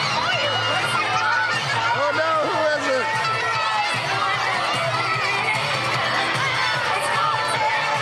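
Dance music played through a PA loudspeaker, with a crowd of children shouting and cheering over it; a cluster of high voices rises and falls about two seconds in.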